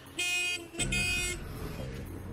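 Car horn honking twice, two steady blasts of about half a second each.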